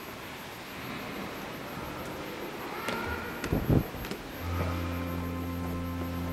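A few knocks and handling noise on the microphone, then a little past four seconds in a church organ begins a held chord, the opening of the offertory music.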